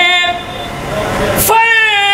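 A man singing a line of Urdu verse into a microphone in long held notes. A first note fades within the first half second, and after a short, quieter gap a second long note starts about one and a half seconds in.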